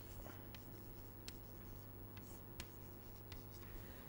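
Faint chalk writing on a chalkboard: a few light taps and scrapes of the chalk, over a steady low room hum.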